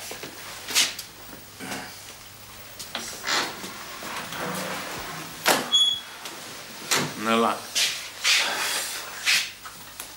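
Scattered knocks and handling noises in a small room. One of them, about five and a half seconds in, has a short high ring, and a brief murmured vocal sound follows.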